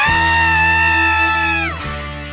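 Rock music with a loud held vocal yell: the voice slides up into a long high note, holds it for about a second and a half, then drops away near the end, over a steady bass and guitar backing.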